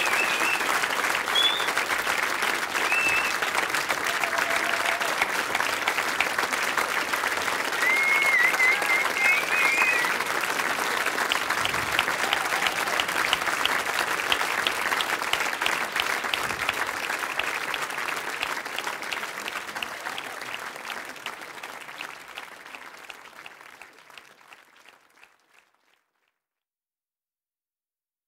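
Audience applauding, with a few short high gliding calls over the clapping. The applause fades out over the last few seconds.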